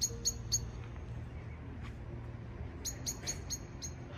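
A common blackbird giving its sharp, repeated 'chink' call notes, the evening roosting call, at about four a second: three notes near the start, then a run of five near the end. A steady low hum lies underneath.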